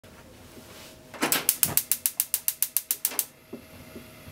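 Gas stove's spark igniter clicking rapidly, about seven clicks a second for some two seconds, as the burner is lit.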